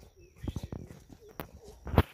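Irregular footsteps and knocks of hikers walking on stony, grassy ground, ending in one sharp, loud knock.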